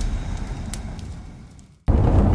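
The intro soundtrack, a noisy wash with a few faint clicks, fades out over nearly two seconds. Just before the end it cuts suddenly to car cabin noise, a low engine and road rumble.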